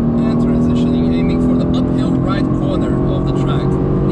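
Mercedes-AMG GT R's twin-turbo V8, heard from inside the cabin, running at fairly steady revs as the car is driven around a track.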